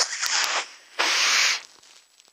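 A man snorting hard in through his nose twice, one nostril held shut with a finger, miming snorting cocaine. The second snort, about a second in, is longer and louder.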